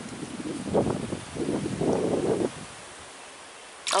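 Irregular rustling of a handheld bunch of leafy agathi branches, mixed with wind on the microphone. About two and a half seconds in, it drops to a faint steady hiss.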